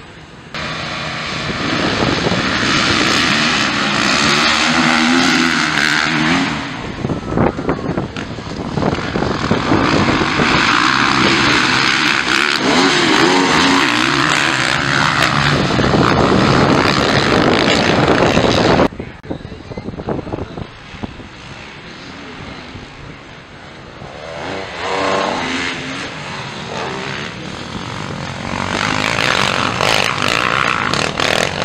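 A pack of motocross bikes racing, their engines revving up and falling away as they accelerate and pass. The sound drops suddenly about two-thirds of the way through, then builds again toward the end.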